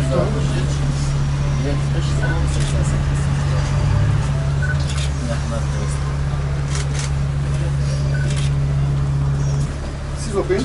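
Steady low drone of a city bus's engine running at idle, heard from inside the passenger cabin. Faint voices and a few light clicks sit over it, and the drone stops just before the end.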